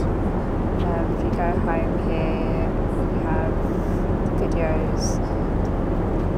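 Steady, loud cabin noise of a Boeing 787 Dreamliner airliner, a low rumble that holds even throughout, with faint voices heard over it now and then.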